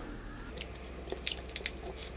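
A small kitchen knife cutting through raw garlic cloves, giving a few quiet, crisp clicks and crunches, mostly in the second half.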